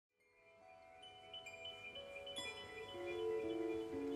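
Live instrumental music by a jazz trio of piano, keyboard and electric guitar, fading in from silence: high, bell-like notes ring over held tones that step lower and grow louder.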